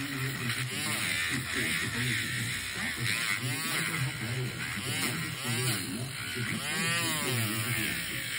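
Electric nail drill with a sanding-band bit grinding down a thickened toenail: a steady motor buzz, with several brief whines that rise and fall in pitch as the bit works the nail.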